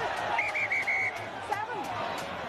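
Referee's whistle blown in four quick blasts, the last a little longer, stopping play.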